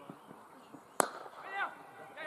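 A cricket bat striking the ball once: a single sharp crack about a second in, followed shortly by a brief shouted call.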